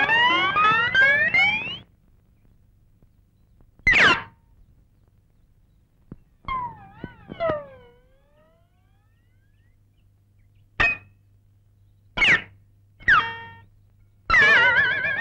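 Comic background-score effects, pitched sounds that slide: a rising slide over the first two seconds, a short drop in pitch about four seconds in, a wavering tone that slides down around seven seconds, and three quick downward slides near the end, with quiet gaps between them.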